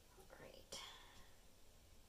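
A faint whisper or muttered word in the first half, otherwise near silence with low room hum.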